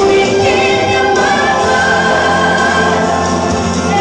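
A woman singing a gospel song into a microphone, holding long notes over instrumental accompaniment.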